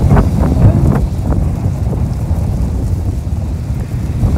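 Wind buffeting the phone's microphone: a loud, uneven low rumble.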